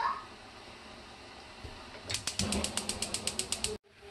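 A rapid run of even mechanical clicks, about ten a second, lasting about a second and a half and starting about two seconds in. Before it there is only a faint steady background.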